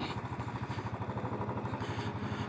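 Royal Enfield Classic's single-cylinder engine running at low revs as the motorcycle rolls slowly in traffic, an even pulsing of about ten beats a second.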